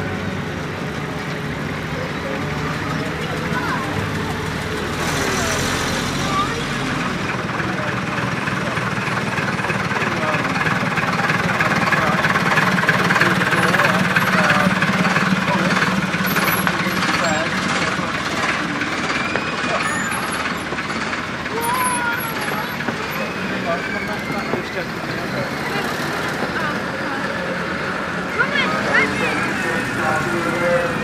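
Engines of vintage fire engines and a double-decker bus running as they drive slowly past, with people chattering around them. The engine sound builds to its loudest about halfway through.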